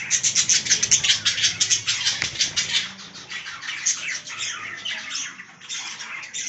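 Zebra finches chirping rapidly and continuously, a dense chatter of short high calls that is busiest in the first half and thins a little later.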